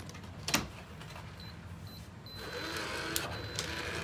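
Electronic keypad deadbolt on a door: a click, then two short high beeps and a longer held beep. A small mechanical whir runs under the last beep, as of the lock's motor working the bolt.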